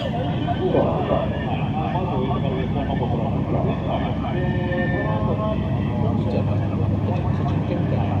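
Two drift cars idling at the start line, a steady low engine hum that grows stronger about five seconds in, under a voice talking.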